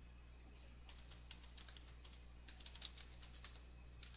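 Typing on a computer keyboard: a faint, irregular run of quick key clicks starting about a second in.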